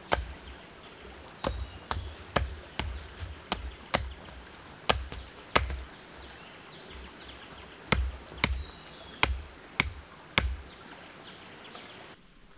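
Repeated sharp blows of a hand tool, about two a second, with a pause of about two seconds midway.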